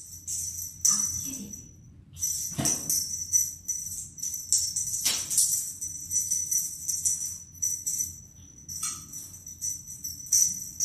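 Small jingle bells on a cat wand toy, jingling in irregular bursts as the toy is waved and batted, with a couple of short pauses. A few dull knocks, the loudest about two and a half seconds in, come from the cats pouncing on the toy.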